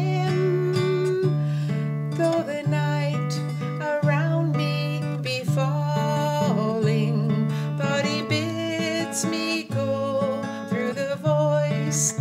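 Acoustic guitar strummed steadily in a slow hymn accompaniment, with a woman's singing voice carrying the melody over it.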